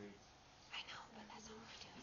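Near silence, with faint whispering voices about a second in.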